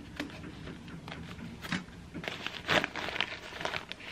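Rustling and short handling clicks as a sherpa-fleece drawstring bag is handled and an item is slipped inside, busiest in the second half.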